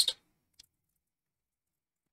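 Near silence, broken once by a single faint keyboard click about half a second in, just after the last word trails off.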